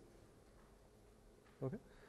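Near silence: faint room tone in a pause of the talk, ended by a short spoken "okay" near the end.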